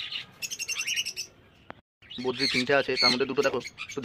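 Flock of caged budgerigars chirping and chattering in quick, high calls. The sound cuts out completely for a moment a little before halfway, then the chatter comes back denser.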